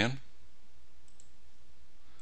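A couple of faint computer mouse clicks about a second in, over a steady low hum from the recording.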